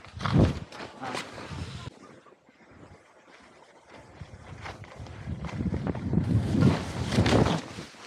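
Wind buffeting an action camera's microphone and skis sliding over snow during a downhill run, rough and rumbling, with a loud gust about half a second in and a longer, louder stretch in the second half.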